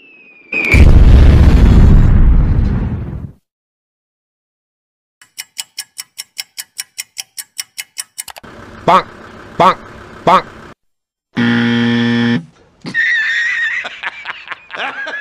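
A run of edited sound effects: a short falling whistle and a loud blast, then rapid even ticking like a countdown timer at about five ticks a second, three short rising blips, a one-second buzzer marking a wrong answer, and hearty laughter near the end.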